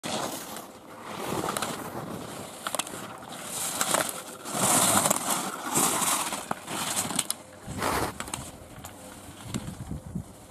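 Slalom skis carving on hard snow: the edges scrape in swells that rise and fall with each turn. Sharp clacks of slalom gate poles being struck and knocked aside are scattered through it.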